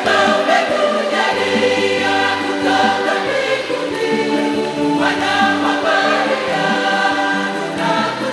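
A choir singing a Swahili Catholic hymn, many voices holding sustained notes together.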